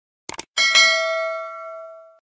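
Mouse-click sound effect, two quick clicks, followed by a bright bell ding that rings and fades away over about a second and a half: the notification-bell sound effect of a subscribe-button animation.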